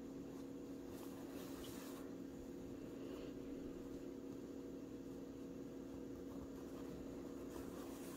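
Faint rustling of yarn drawn through crocheted fabric with a yarn needle, once between one and two seconds in and again near three seconds, over a steady low hum.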